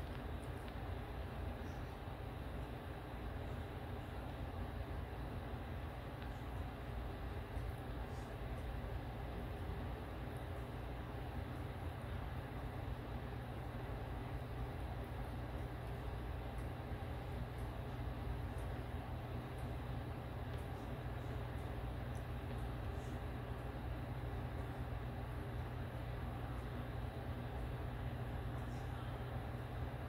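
Engine of a rear-loading garbage truck running with a steady low rumble as the truck manoeuvres.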